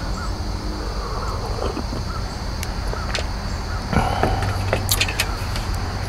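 Outdoor backyard ambience: a steady low hum, with a few faint clicks and a short bird call about four seconds in.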